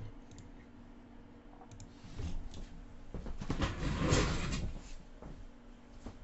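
Faint handling noises: a brief rustle about two seconds in and a longer, louder rustling-and-bumping stretch around the fourth second. A faint steady electrical hum runs underneath.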